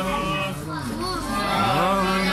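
Several children's voices talking and calling over one another.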